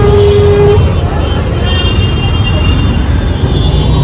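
Busy street traffic: a steady low rumble of engines, with a vehicle horn held for under a second at the start and crowd voices in the background.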